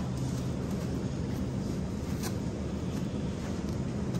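Steady low rumble of supermarket background noise, with one faint click about two seconds in.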